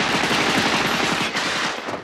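Rapid automatic gunfire in one long, loud burst that cuts off near the end: a film's machine-gun sound effect.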